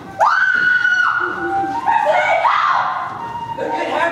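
A high-pitched staged scream held for about a second, then more cries and excited voices as the actors scuffle.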